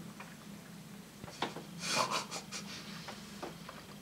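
Close-up mouth sounds of a person chewing sweets: soft lip smacks and clicks, with a breathy burst from the mouth or nose about two seconds in.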